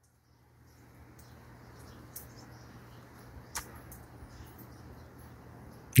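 Faint steady background noise with a low hum, broken by two brief clicks; a voice starts right at the end.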